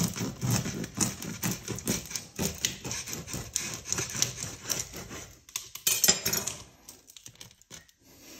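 Knife sawing through the crisp crust of a sourdough loaf on a wooden cutting board: a dense run of crunches and crackles with the knife's back-and-forth scrape, easing off after about five seconds. A short loud flurry of crackling comes about six seconds in, then only a few faint clicks.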